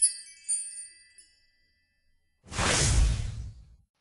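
Intro-sting sound effects for a logo animation. A high tinkling chime fades out in the first second. About two and a half seconds in comes a noisy whoosh with a deep rumble under it, lasting about a second.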